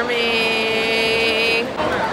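A high voice holding one long, steady shouted note, sliding up into it and cutting off after about a second and a half, over crowd noise in a large hall.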